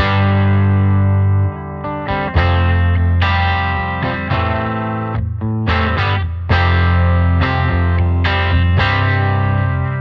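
Overdriven electric guitar played through a Blackstar St. James 50-watt valve amp: a run of struck chords and notes, several left to ring for a second or more, with strong low notes underneath.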